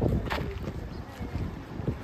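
Wind rumbling on a handheld phone microphone outdoors, with faint street noise underneath; a brief sharper sound about a third of a second in and a short thump near the end.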